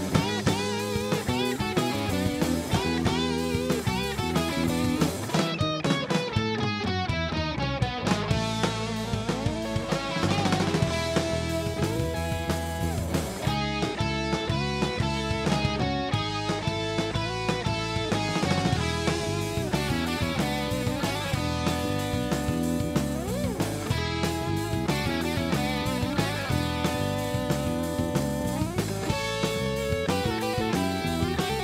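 Live rock band playing an instrumental with no vocals: electric guitar lead lines over a second guitar, bass and a full drum kit, heard through a soundboard mix.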